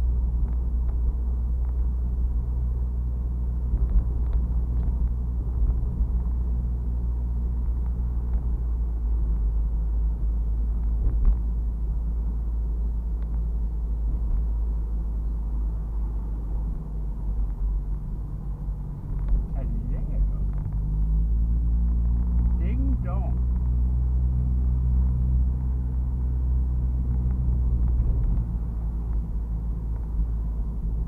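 Turbocharged Mazda MX-5's four-cylinder engine and road rumble heard inside the cabin while driving; the engine note steps up about two-thirds of the way through as the car pulls harder.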